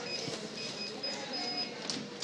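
High-pitched electronic beeping in short broken tones of one steady pitch, over a background of handling noise with a few clicks.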